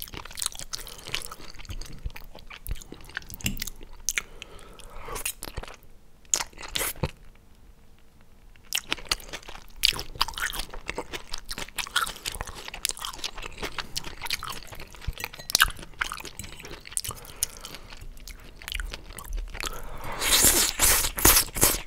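Close-miked chewing of squid ink pasta with shrimp, full of wet mouth clicks and smacks, with metal fork and spoon working through the pasta on the plate. The sounds go quieter for a few seconds near the middle.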